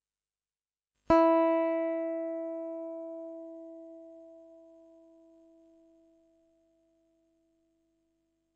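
A single open high E string on an Aria MA series electric guitar plucked once, about a second in, ringing as one clear note that dies away steadily over about five seconds. It is a sustain test with a thick pot-metal Wilkinson WOV04 tremolo block fitted.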